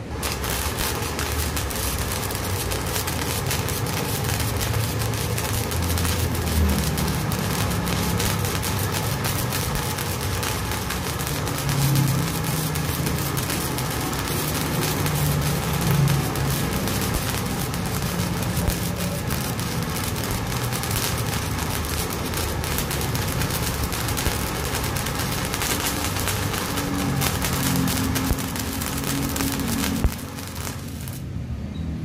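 Flux-core wire arc welding with a homemade torch powered by an ordinary MMA (stick) welding machine: the arc strikes right at the start and crackles steadily.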